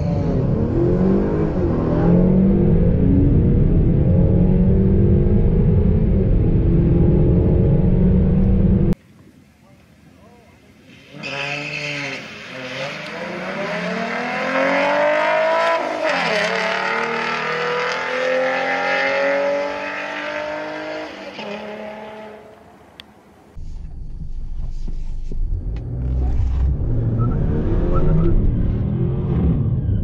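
Honda Accord Sport 2.0T's turbocharged four-cylinder accelerating hard down a drag strip, heard from inside the cabin with revs climbing again and again. About nine seconds in the sound cuts to trackside, where two racing cars run past with rising engine notes, their pitch swinging as they pass near the middle. About three-quarters of the way through it returns to the low steady rumble of the Accord's cabin at idle.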